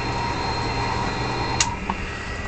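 Steady low hum of a fishing vessel's engine and machinery, heard inside the wheelhouse, with one short sharp click about a second and a half in.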